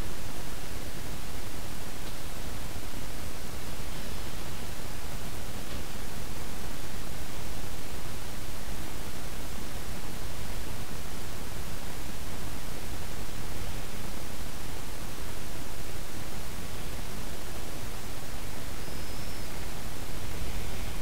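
Steady, even hiss of recording noise from the microphone and recording chain, with no other sound.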